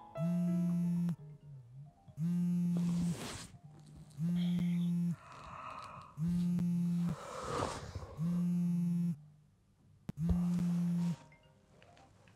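A mobile phone buzzing with an incoming call: six even, steady buzzes, each about a second long and about two seconds apart. Between them come low groans of someone being woken.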